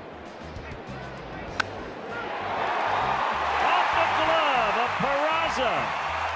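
Crack of a wooden baseball bat hitting a pitched ball about a second and a half in, then a ballpark crowd cheering, swelling and staying loud as the hit goes for extra bases.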